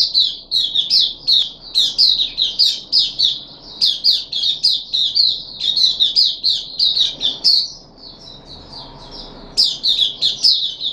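Caged oriental white-eye (puteh) singing a fast, unbroken run of high chirping notes. The song drops to a faint thin warble for about two seconds near the end, then picks up loudly again.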